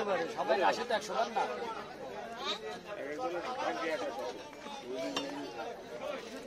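People chattering and talking in the background, with a few sharp clicks and knocks about a second in and again near the end.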